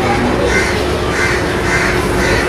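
Crows cawing several times, over a steady hum.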